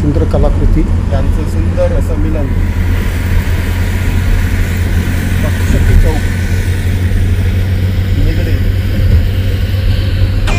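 Steady low drone of a car's engine and tyres heard from inside the cabin while driving along at speed, with indistinct voices in the first couple of seconds.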